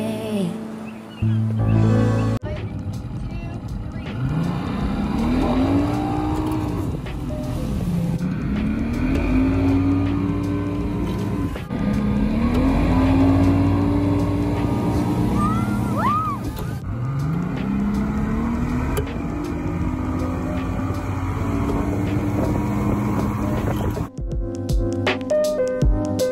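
Mercury outboard motor run up four times in a row, its pitch climbing and then holding each time as it pulls a water-skier up out of the water.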